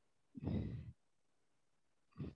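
A person's short breath out, a sigh lasting about half a second, heard faintly a little way in.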